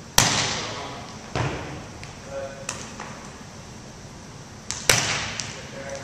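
A volleyball smacked hard by an open hand, then a softer thud about a second later as it is passed off a player's forearms; the pair repeats near the end. Each hit echoes around the gym.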